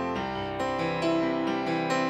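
Piano sound played on a Yamaha MOXF keyboard: a slow run of held chords, with new notes struck about every half second.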